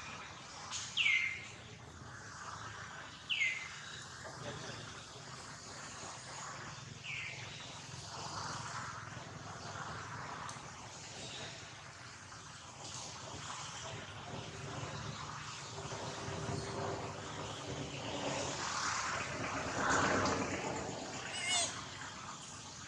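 Outdoor ambience with birds: three short chirps, each sweeping sharply downward, in the first seven seconds, and a high wavering call near the end, over faint background voices.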